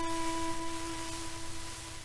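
Solo violin holding a long final note that fades out near the end, heard through the steady hiss of an old 1933 shellac disc.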